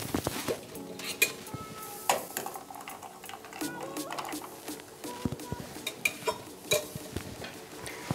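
Long twisted bar spoon stirring ice in a stemmed wine glass: irregular clinks of ice and metal against the glass.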